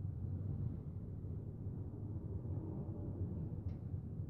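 Steady low background hum of room noise, with no distinct event.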